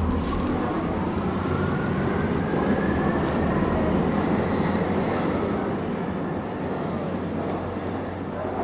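A recorded sound piece playing over speakers: a dense, rumbling noise with a thin whine that slowly rises in pitch over the first few seconds. It eases off a little near the end.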